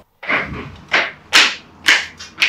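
Footsteps coming down a staircase: four sharp steps about half a second apart.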